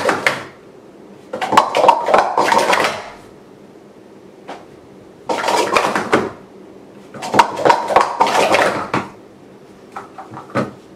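Plastic sport-stacking cups clattering rapidly against each other and the mat as 3-3-3 stacks are built up and taken down. A short clatter comes at the start, then three fast runs of about one to two seconds each, with quiet pauses between.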